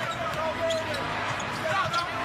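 Basketball game sound in an arena during live play: steady crowd noise with a basketball dribbling on the hardwood court.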